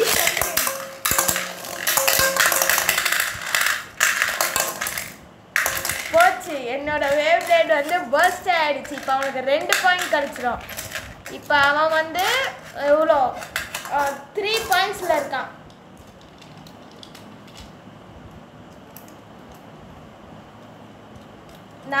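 Beyblade spinning tops launched into an aluminium bowl, clattering and scraping against the metal and against each other for about five seconds. This is followed by excited children's voices, and then the sound dies down to quiet.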